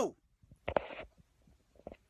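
A man's voice: the tail end of a long, drawn-out "no", then a short breathy vocal sound just under a second in.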